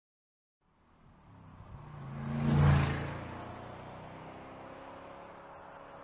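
Dubbed vehicle engine sound effect. It comes in about a second in, swells to a loud peak, then settles into a steadier, quieter running hum.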